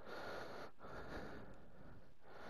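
Faint breathing close to the microphone, in even stretches of about a second each.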